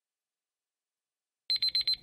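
Countdown timer's time-up alarm sound effect: four rapid high-pitched beeps in about half a second near the end, as the timer reaches zero.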